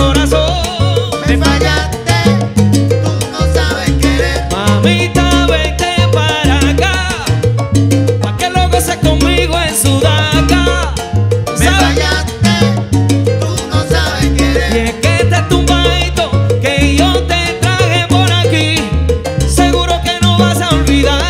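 Salsa orchestra playing live: a bass line in a steady repeating rhythm under piano, Latin percussion and horns.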